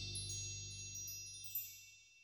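A magical-sounding chime sting, with high tinkling, ringing notes over a low held tone, decaying and fading out.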